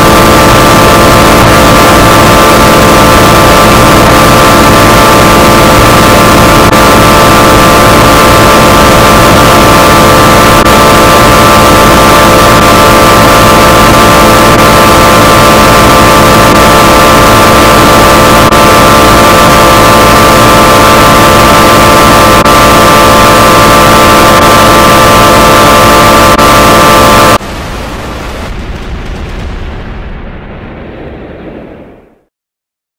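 Very loud, heavily distorted soundtrack: a dense wall of noise with steady held tones. About 27 seconds in it drops sharply to a quieter, muffled sound that fades out.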